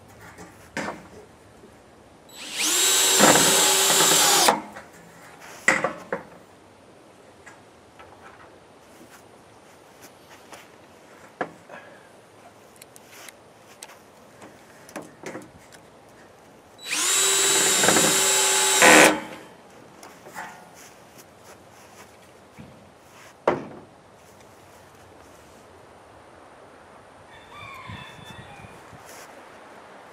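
Cordless drill driving one-inch rubber-washered metal screws into corrugated metal roofing: two runs of about two seconds each, a few seconds in and again about halfway through, with short clicks and knocks between them.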